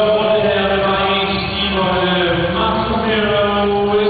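Background music: a slow song, one voice holding long sustained notes over a steady accompaniment.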